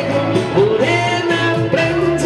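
Karaoke backing track playing loudly, with a man singing into a microphone over it.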